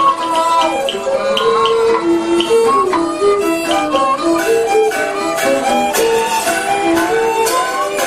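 Traditional-style instrumental music led by a bowed string instrument, playing a melody of held notes that slide between pitches, with short percussive clicks over it.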